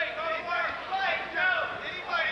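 Men's voices speaking, with no other sound standing out.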